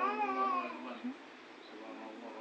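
A baby's short, whiny vocal cry: one drawn-out sound that rises and falls in pitch over about the first second, then fades.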